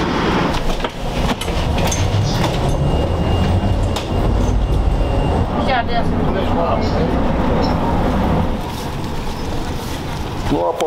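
A tram running on its rails: a steady low rumble with scattered clicks.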